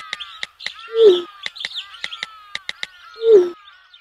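Birds chirping, with many quick high sliding calls and, twice, a louder lower falling call, over a run of sharp clicks. It all cuts off at the end.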